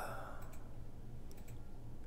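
Quiet room tone with a steady low hum and a few faint clicks, about half a second in and again about a second and a half in.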